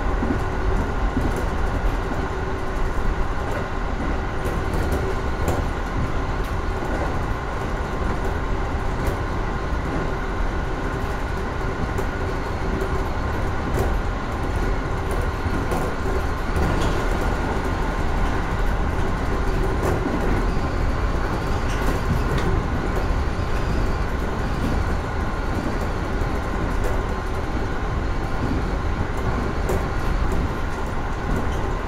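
JR East 415 series electric train running, heard from the driver's cab of the leading car: a steady running hum and whine with scattered rail-joint clicks. An oncoming train passes on the next track a little past halfway.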